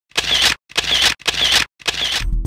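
Camera shutter sound effect: four identical shutter clicks with a short whirring wind, about half a second apart.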